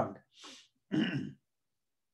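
A man clears his throat once, about a second in, after a short breath.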